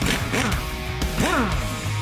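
Background rock music with electric guitar, with two rising-then-falling pitched sweeps, about a third of a second and a second and a quarter in.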